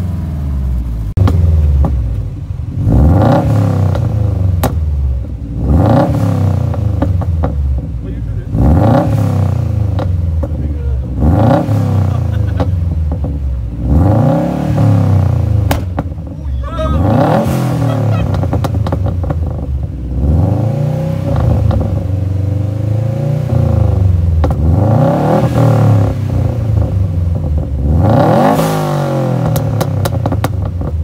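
Subaru WRX STI flat-four engine free-revved through a loud aftermarket exhaust, again and again: each rev climbs sharply and drops back to idle, about every three seconds.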